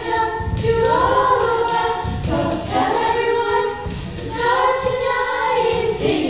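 A group of young voices singing together in unison.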